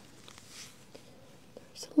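Faint, soft rubbing of gloved fingertips pressing and sliding on the skin of the neck during a lymph node palpation, with a few light ticks. A short breath or lip sound comes just before speech starts at the end.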